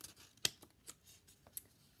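Faint handling noise from a small hardcover book held in the hands: a sharp click about half a second in, then a couple of lighter ticks and paper rustles.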